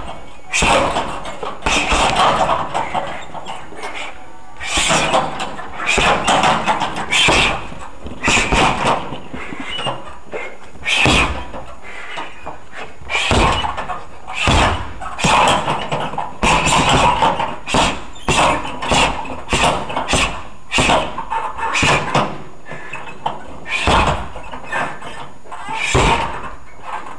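Boxing-gloved punches and shin kicks landing on a hanging leather heavy bag: a string of thuds and slaps in bursts of several strikes, with short breaks between combinations.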